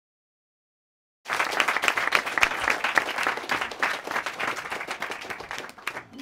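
Dead silence for about a second, then an audience applauding: a dense patter of many hands clapping that fades away toward the end.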